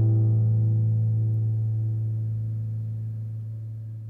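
Last chord of a classical guitar ringing out and slowly fading, the low bass note lasting longest.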